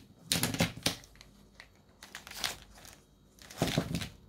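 Plastic acrylic paint markers clicking and clacking against each other as they are handled and gathered up. There are a few clusters of clicks: one shortly after the start, a couple about halfway and another near the end.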